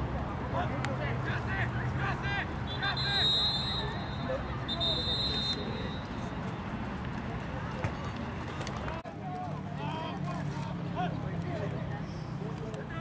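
Unintelligible sideline voices chattering and calling out over a steady low hum, with two short steady whistle blasts about three and five seconds in, like a referee's whistle stopping play.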